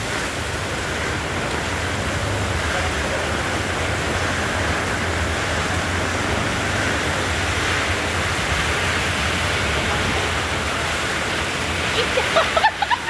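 Torrential rain pouring down steadily in a storm, an even hiss with a steady low rumble underneath.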